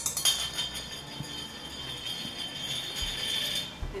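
A metal fruit-jar ring (canning jar band) clinks against the tile floor a few times, then keeps ringing steadily for about three and a half seconds before it stops.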